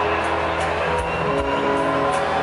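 Live band playing held chords over a light, even beat of about two and a half soft percussion hits a second.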